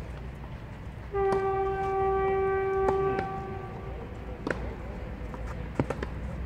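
A horn sounds one steady, unwavering note for about two seconds, starting about a second in and dying away. Sharp pops of tennis balls being struck on the clay court come before, during and after it.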